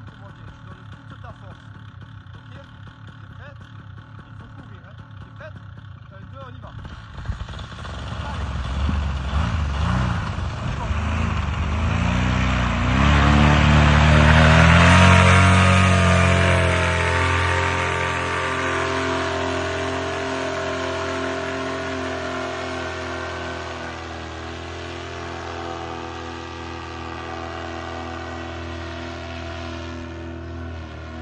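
Vittorazi Moster 185 two-stroke paramotor engine and propeller at low throttle, then run up to full power for a foot-launched tandem takeoff about a quarter of the way in. The pitch climbs as it accelerates, is loudest as it passes close about halfway through, then drops in pitch and fades as the machine climbs away.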